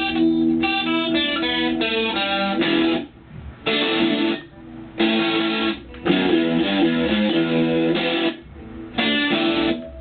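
Stratocaster-style electric guitar played by a beginner: single picked notes and short riffs in phrases broken by several brief pauses.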